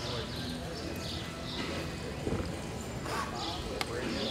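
A cutting horse's hooves on the soft dirt of an arena as it works cattle, over a background of indistinct voices.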